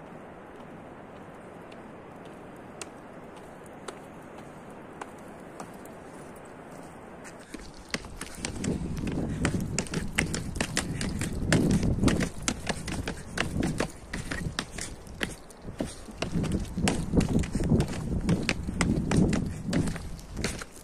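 Steady hiss at first; from about eight seconds in, wind buffets the phone's microphone in gusts, with rapid irregular clicks and knocks of footsteps and handling as the person walks.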